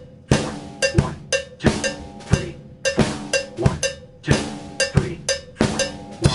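Drum kit played as a repeating groove: bass drum kept on quarter notes, snare on beats 2 and 4, and the right hand playing a 16th-note 3-3-2 grouped rhythm.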